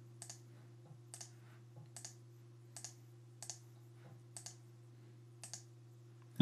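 Faint computer mouse clicks, about seven spaced irregularly, over a low steady electrical hum.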